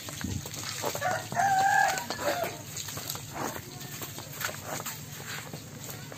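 A rooster crows once, about a second in, a held call lasting around a second and a half.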